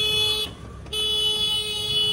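A vehicle horn honking in street traffic: one honk ends about half a second in, then a long, steady honk sounds from about a second in.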